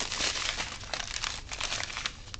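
Small clear plastic packets of diamond-painting drills crinkling as they are handled and shuffled by hand, a dense papery crackle.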